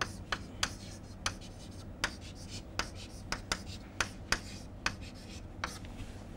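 Chalk writing on a blackboard: a string of short, irregularly spaced taps and scrapes as the letters are formed, about a dozen in six seconds, over a faint steady low hum.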